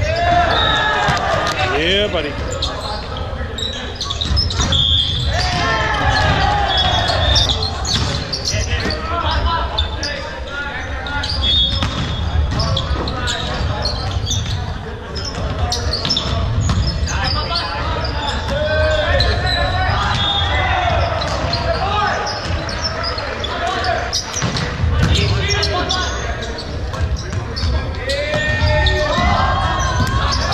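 Indoor volleyball match sounds in a large, echoing gym: players and spectators calling out and shouting throughout, over repeated thuds of the ball being hit and bouncing, with short high squeaks scattered through.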